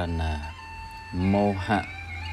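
A man's voice chanting Khmer verse in long, drawn-out melodic syllables, over a faint steady background tone.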